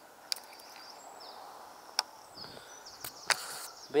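Small BFS baitcasting reel working: the spool whirs in short, high-pitched spells that slide in pitch, between several sharp clicks of the reel's mechanism. The loudest click comes a little after three seconds in.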